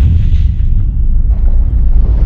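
Loud, deep, steady rumble of a cinematic boom sound effect accompanying an animated logo intro.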